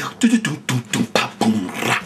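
Old-school vocal beatbox imitating a drum kit: mouth-made kick-drum 'boom' and snare 'cha' sounds in a quick rhythm, about four strokes a second, with a longer hissing cymbal-like stroke near the end.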